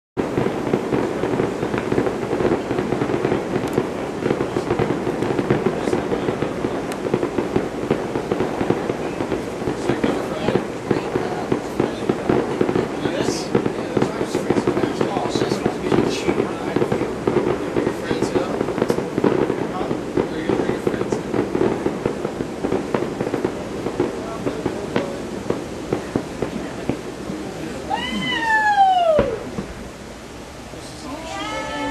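Fireworks display: repeated bangs and crackling from aerial shells over a constant murmur of crowd voices, with a loud falling whistle near the end.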